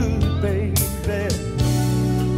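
Electric guitar played along with a recording of a slow R&B song, with singing over sustained bass and a drum beat.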